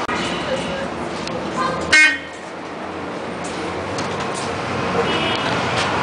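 A vehicle horn gives one short, loud honk about two seconds in, over the steady rumble of a city bus and street traffic. A fainter toot follows about five seconds in.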